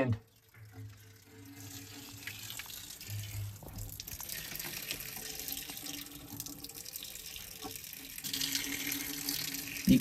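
A thin stream of water from a windmill pump's outlet pipe pouring and splashing onto wet lava rock, the flow of the pump in a low wind. A steady trickling splash that grows louder near the end.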